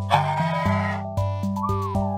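A cartoon dinosaur's cry, about a second long, over upbeat background music, followed near the end by a short rising-then-falling tone.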